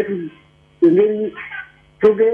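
A person's short held voice sound, a single drawn-out 'eh'-like tone lasting about half a second, about a second in, with brief pauses either side.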